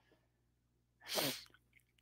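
Mostly near-silent room tone, with one short breathy vocal burst from the man about a second in, its pitch falling.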